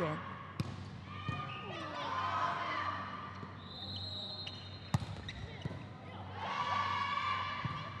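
Volleyball rally: a few sharp slaps of the ball being hit, the loudest about five seconds in, with players' voices calling out between the hits.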